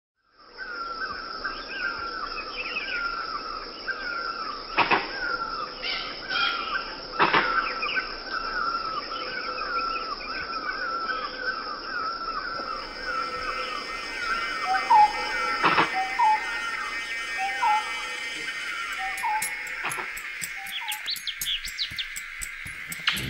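Forest ambience: a bird repeats a short chirping call about twice a second over a steady high drone, with a few sharp knocks. In the later part a second, lower rising call repeats about once a second.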